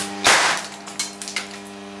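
Oxyhydrogen (HHO) gas igniting with a bang as the flame flashes back through the torch and blows the lid off the water bubbler: the bronze-wool spark arrestor has failed. A sharp click, then the bang about a quarter second in, fading over half a second, with two small knocks after it, over a steady hum.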